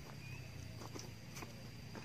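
Quiet outdoor ambience with a few light, irregular footstep scuffs and knocks on bare ground, over a steady low hum and a thin steady high tone.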